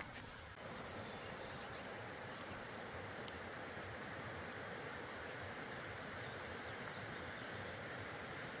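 Steady rushing of a full mountain stream, starting about half a second in. Small birds chirp faintly now and then, with a thin high whistle near the middle.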